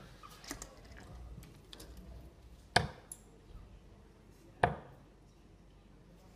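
Two darts striking a bristle dartboard, each a single sharp thud, about two seconds apart.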